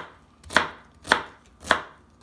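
Chef's knife chopping celery on a thin plastic cutting mat: three evenly spaced chops, a little over half a second apart.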